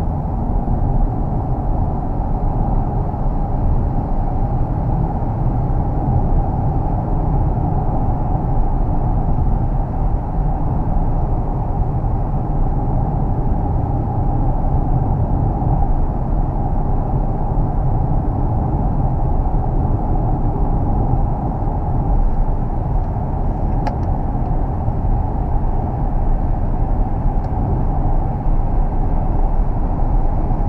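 Steady road and wind noise heard inside the cabin of a Kia Optima plug-in hybrid driving at highway speed, mostly a low rumble from the tyres. A single faint click comes about four-fifths of the way through.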